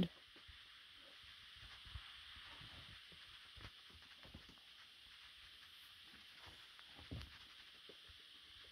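Near silence: a faint steady background hiss, broken by a few faint short knocks.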